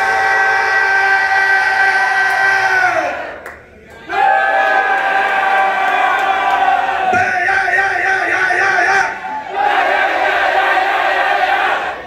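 Voices from the stage and the crowd holding long shouted notes in a chord. Each sags in pitch and breaks off, then starts up again every few seconds, imitating how a Honda Civic sounded.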